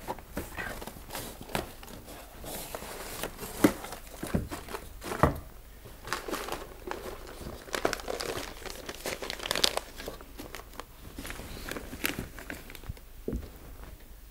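Sheets of washi printing paper being handled and turned over one by one from a stack, rustling and crinkling, with a few sharper paper snaps and taps, the sharpest about three and a half and five seconds in.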